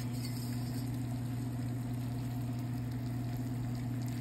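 Lagos spinach and hibiscus leaves with chopped onion sizzling steadily as they stir-fry in a stainless steel pan, over a steady low hum.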